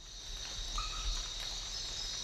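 Rainforest ambience: a steady, high-pitched chorus of insects fades in over a low rumble. A brief whistled call comes just under a second in.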